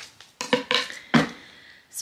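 A box of toiletries being handled: a few knocks and clatters about half a second in, then a louder thump a little over a second in.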